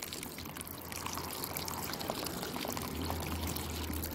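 Water pouring steadily from a pipe outlet into pool water just below the surface: the return flow of solar-heated water from DIY solar panels into an above-ground pool.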